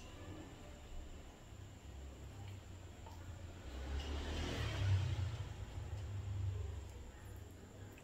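Quiet low rumble, with soft scraping that grows a little louder in the middle: a silicone spatula scraping thick sweetened condensed milk out of an opened tin can into a stainless steel bowl.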